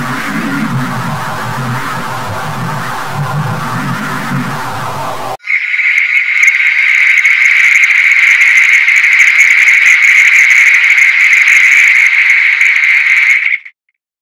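Effects-processed logo jingle audio in two parts: first a sound with several pitches and a pulsing low end, then, about five seconds in, a louder steady high tone with hiss above it that cuts off suddenly just before the end.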